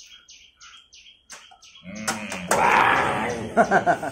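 A small bird chirping in short, high notes repeated about four times a second, clearest in the first second and a half.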